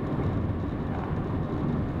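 Steady road and engine noise of a car driving at cruising speed, heard from inside the cabin: an even low rumble with no separate events.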